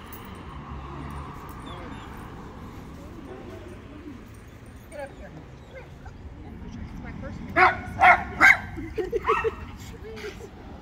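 A dog barking: three loud barks in quick succession near the end, followed by a few quieter yips.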